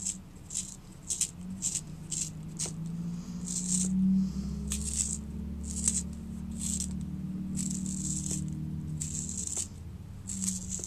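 Wooden pencil being turned in a small handheld makeup sharpener, its blade shaving the wood in short, crisp scraping strokes about once or twice a second. A low hum runs underneath, loudest in the middle.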